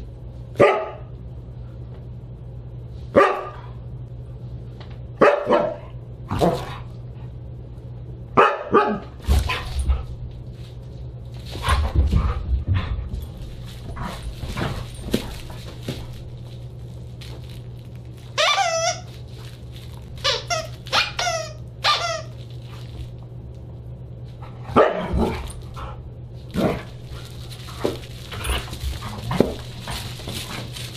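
Siberian husky barking in short, sharp barks every second or two, with a run of higher, wavering yowling calls about two-thirds of the way through. Dull thuds come in between as the dog flails a plush toy, over a steady low hum.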